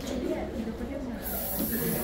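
Aerosol party spray can hissing in a sustained high-pitched rush that starts suddenly a little over halfway in, over people talking.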